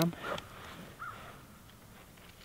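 Quiet outdoor ambience with one faint, brief call about a second in.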